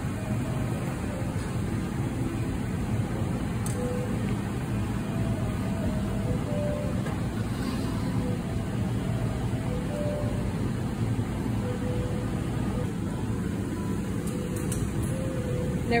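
Steady low roar of glass-studio furnace burners and fans.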